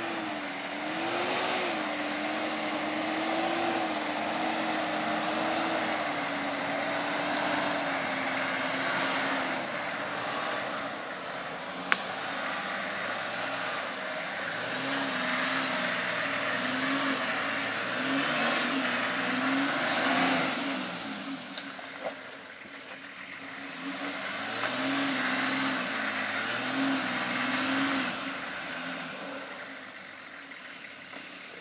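Four-wheel-drive vehicle's engine revving hard in repeated surges as it climbs a steep muddy track, with a dip about two-thirds of the way through, then building again and easing off near the end.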